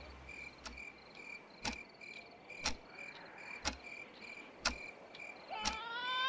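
Faint crickets chirping in steady, evenly spaced pulses, with a sharp tick about once a second. Near the end a cat begins a rising meow.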